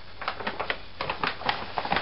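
Irregular light clicks and rustles of products and plastic packaging being handled and picked up.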